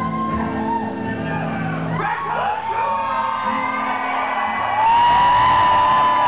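Live rock concert sound: guitar chords ringing out, and from about two seconds in, voices shouting and whooping over them. A long, loud held shout comes near the end.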